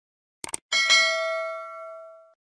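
Two quick clicks, then a single bell ding that rings and fades over about a second and a half. It is the sound effect of a YouTube subscribe animation, the cursor clicking the notification bell.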